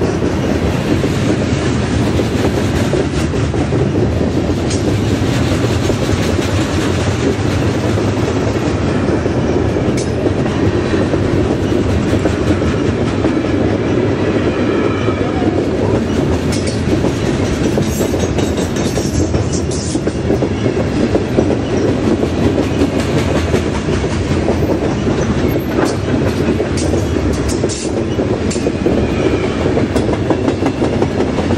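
Loaded steel coil cars of a freight train rolling past at close range: a steady, loud rumble of steel wheels on rail, with scattered clicks from the wheels over the rail joints.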